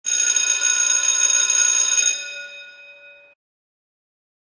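School bell ringing: a steady metallic ring for about two seconds, then dying away, cut off suddenly a little past three seconds in.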